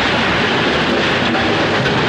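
Film sound effect of a stone wall being blasted open and crumbling: a loud, steady roar of rushing noise that stops suddenly just after the end.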